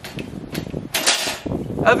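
Wire-mesh live cage trap being triggered: its door drops and slams shut with a short metallic clatter about a second in.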